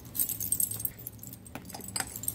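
Sterling silver medals clinking against one another in a quick run of light metallic clicks as they are handled, with the clicks thickest in the first second.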